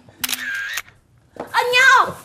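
Camera shutter click about a quarter second in, lasting about half a second. A person starts speaking loudly near the end.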